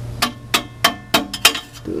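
Hammer tapping on the exhaust pipe to drive its slip joint together: about six quick metallic strikes, roughly three a second, the last two close together.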